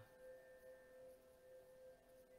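Faint sustained ringing of Koshi chimes: several steady pitched tones held together, lingering between strikes.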